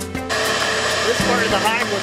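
Bee vacuum's motor running with a steady rush, drawing bees through the hose held to the comb. It cuts in about a third of a second in over background music, and a man's voice comes in over it in the second half.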